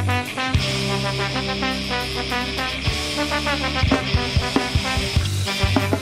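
A ska-punk band playing an instrumental stretch of a song on a lo-fi 1997 cassette demo, with no singing. Sharp drum hits come thicker from about four seconds in.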